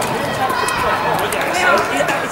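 Several voices calling out and talking over one another during open play in a football match.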